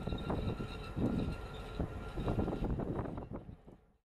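Wind on deck buffeting the microphone in uneven gusts, a low rumble that swells and eases, fading out near the end.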